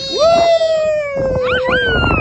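A long, playful howl-like vocal note, held and sinking slightly in pitch. A higher squealing voice rises and falls over it near the end.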